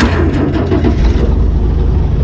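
International Harvester tractor engine catching at once and running loudly and steadily, freshly started from cold.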